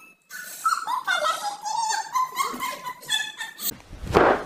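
A run of high, wavering whimpering cries, with one held longer in the middle; they start just after the beginning and stop shortly before the end.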